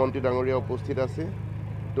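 A man talking over a steady low engine hum from running heavy machinery; his speech stops a little after a second in, leaving the engine running alone.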